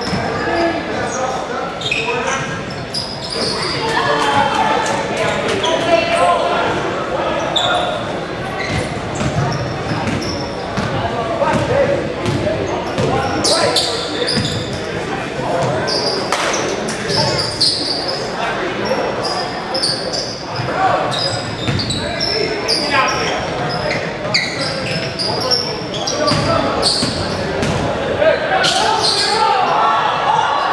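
Basketball game sounds echoing in a gym: a ball bouncing repeatedly on the hardwood floor amid indistinct voices of players and spectators calling out.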